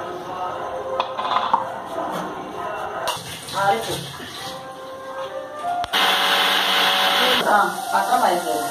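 People talking and laughing, with music in the background. About six seconds in, a loud steady rushing noise starts abruptly and cuts off about a second and a half later.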